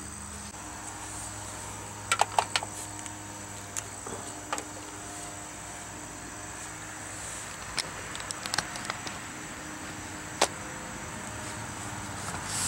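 Clicks and knocks of battery-charger leads and their quick-disconnect plug being handled and pulled apart at a truck battery's terminals. A quick cluster of clicks comes about two seconds in, then single clicks scattered through the rest, over a steady hum.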